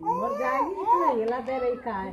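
A small child's high-pitched wordless vocalizing, the pitch sliding up and down in a long whiny run of sounds.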